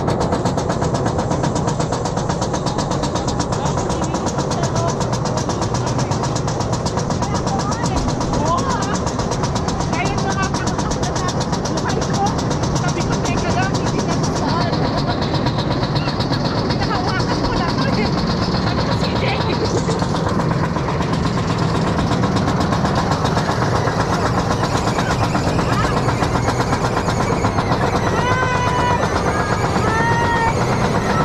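Roller coaster train climbing the lift hill: a steady mechanical rattle and clatter from the lift and the train's wheels on the track.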